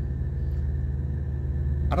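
International ProStar semi truck's diesel engine idling, a steady low rumble heard from inside the cab.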